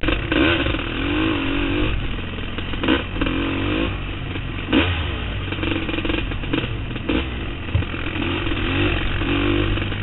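ATV engine running at varying throttle on a rough dirt trail, its note rising and falling, with several sharp knocks and rattles as the machine jolts along.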